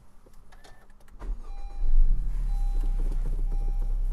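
A car engine starting on a flat battery that has been boosted through jumper cables from a running car. After a few faint clicks, the engine cranks briefly, catches about two seconds in, and settles into a steady idle.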